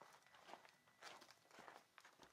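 Near silence with faint scattered rustles and soft clicks, five or six brief handling noises and no music.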